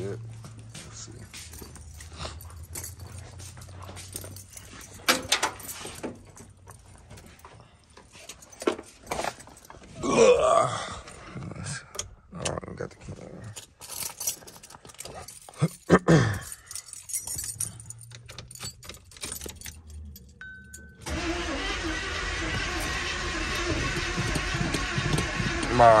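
Knocks, clicks and rustling of someone moving about and getting into a car, and a short beep. For the last five seconds or so, the engine of a box-body Chevrolet Caprice cranks on the starter without catching, which the owner takes as a sign that the ignition timing needs setting.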